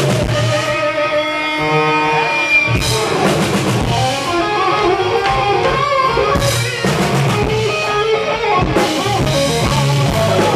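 Live rock band playing an instrumental passage: electric guitar lines with some bent notes over a full drum kit and bass.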